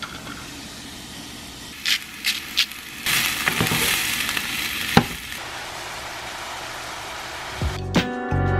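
Shredded red cabbage sizzling in hot oil in a nonstick frying pan as it is stirred with a wooden spatula, with a few sharp taps of the spatula on the pan. The sizzle swells for about two seconds starting about three seconds in.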